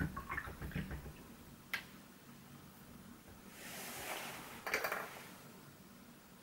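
Faint handling sounds of watercolour painting: small scratchy taps in the first second and a single sharp click a little under two seconds in, then a soft rustle of a cloth in the last couple of seconds.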